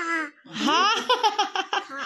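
A toddler laughing: a high rising squeal that breaks into a quick run of short laughs.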